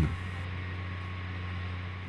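A steady low hum with a light hiss, with no distinct events.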